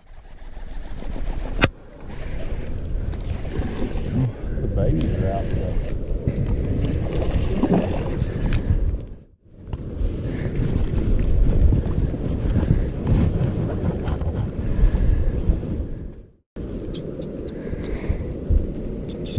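Low rumbling wind buffeting an outdoor camera microphone, with muffled voices underneath; the sound cuts off abruptly twice.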